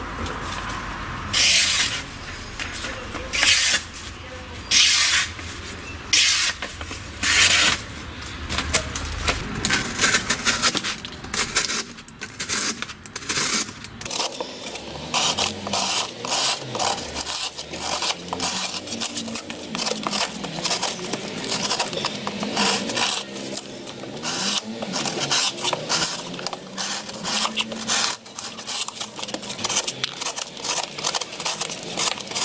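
The blade of a Cold Steel SR1 Lite folding knife cutting. It first makes separate scraping slices through paper, about one every second and a half to two. From about halfway it makes rapid, closely spaced strokes through corrugated cardboard.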